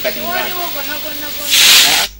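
A person's voice talking, then a loud, sharp hissing 'sss' lasting about half a second near the end.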